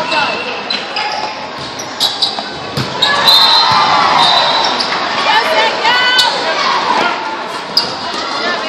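Volleyball rally on an indoor gym court: the ball is struck a few times, sharply, and sneakers squeak on the floor, with players and spectators calling out in the echoing hall.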